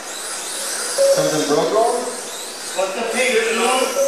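Talking that the transcript did not catch, starting about a second in, over the faint high-pitched whine of Mini-Z RC cars' small electric motors racing around the track.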